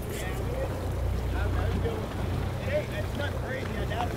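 Steady low rumble of a boat engine idling on open water, with wind on the microphone and faint, indistinct voices in the background.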